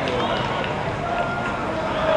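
Stadium crowd of football supporters, many voices talking and calling out at once.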